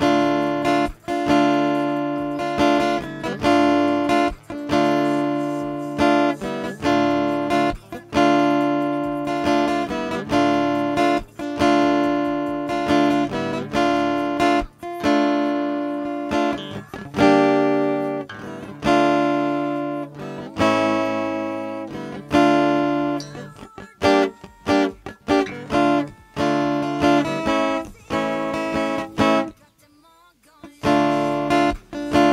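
Acoustic guitar strummed in a quick down-up pattern, mostly on a D minor chord. The strummed chord changes more often in the second half, moving through G minor, D minor and A near the end.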